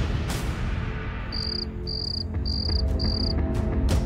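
Cricket chirps, four short, even, high-pitched trills about half a second apart, over a low dramatic music drone; a sudden swell of sound opens the passage as the night scene begins.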